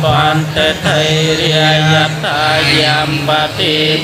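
Theravada Buddhist monks chanting Pali verses together, a steady recitation held on one low pitch with short breaks for breath.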